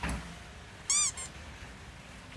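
A short, high-pitched squeal that rises and falls in pitch, about a second in, followed at once by a fainter, shorter one.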